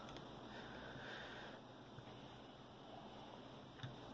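Very quiet: faint hiss with a couple of small metallic clicks as a hex key turns a screw in the Rockit 99 delid tool.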